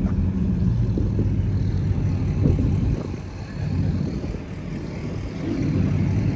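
Car engine rumbling low as a car drives off the lot. The sound fades about halfway through, and engine noise builds again near the end.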